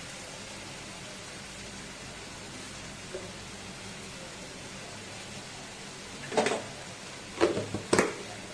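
Chopped green chillies and fenugreek frying in a kadai with a faint, steady sizzle, then a few short knocks near the end, about a second apart.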